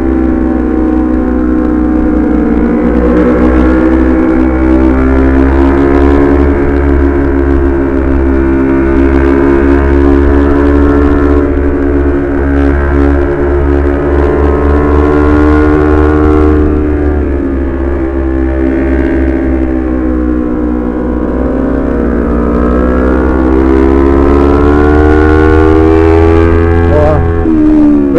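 Honda CBR250RR parallel-twin engine running at high revs while riding. Its pitch slowly rises and falls through the bends. Steady wind rumble sounds on the microphone underneath.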